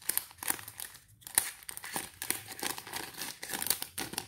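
Thin plastic zip-lock packaging crinkling as it is handled, in irregular crackles with a short pause about a second in.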